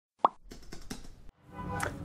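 A single short pop sound effect, as in an intro sting, about a quarter second in, followed by faint scattered ticks and then quiet room tone.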